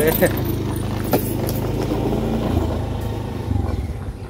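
An engine running steadily, a low hum that eases off slightly near the end.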